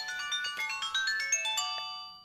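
Mobile phone playing an electronic ringtone: a quick run of short, bright notes stepping up in pitch, fading out near the end.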